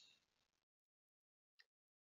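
Near silence: a gap in the narration.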